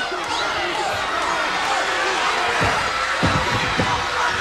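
Arena crowd at a pro wrestling match yelling and cheering as one dense mass of voices, with a few dull thumps about three seconds in.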